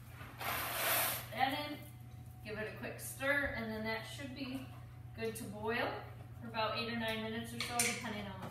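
Mostly voices talking, with a steady low hum underneath and a short hissing rush of noise about a second in.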